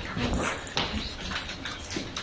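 Handling noise from a handheld microphone being passed between speakers: a few scattered knocks and rustles.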